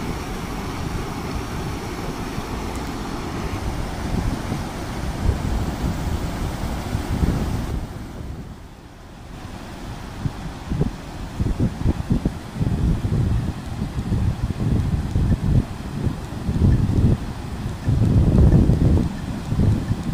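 Muddy floodwater rushing over rocks in a steady roar, with wind buffeting the microphone in gusts that grow stronger near the end.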